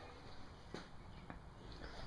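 Quiet room tone with two faint clicks, about three-quarters of a second and a second and a quarter in.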